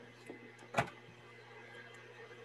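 Faint steady hum of room tone over an online call, broken by one short, sharp click a little under a second in.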